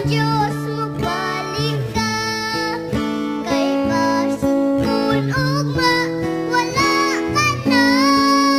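A Bisaya Christian worship song: one high solo voice singing melodic lines with held notes, over acoustic guitar accompaniment.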